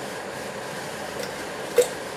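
Steady hiss of pots steaming on a gas hob, with one short sharp knock near the end.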